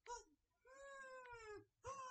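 A high-pitched, drawn-out meow-like call lasting about a second and sliding slightly down in pitch, with a second call starting near the end.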